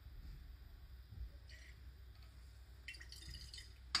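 Faint sounds of acid running from a burette into a glass conical flask and the flask being swirled: two short soft splashy noises, one about a third of the way in and a longer one in the second half, then a short sharp knock near the end.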